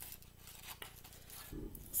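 Faint handling sounds of fingers braiding soft dough strips on a ceramic plate: a few small clicks, with a soft low thud near the end.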